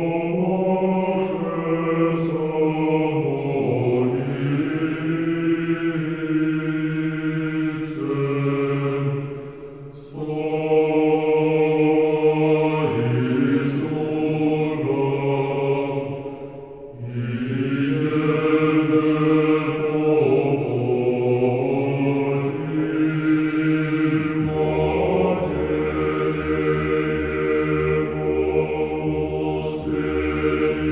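Unaccompanied male choir singing Russian Orthodox sacred chant in long, held chords, pausing briefly between phrases about ten and seventeen seconds in. A much deeper bass note enters under the chord about three-quarters of the way through.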